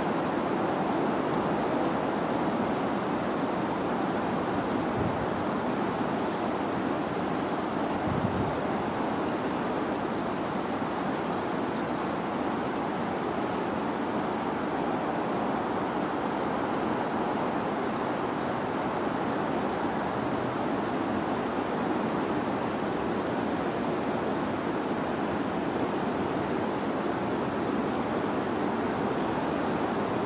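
A steady rushing noise that stays even throughout, with no distinct sound standing out, apart from a couple of faint low bumps about five and eight seconds in.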